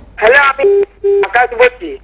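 Telephone call audio on a live phone-in: a voice speaking in short bits, broken a little under a second in by two brief steady beeps on one pitch.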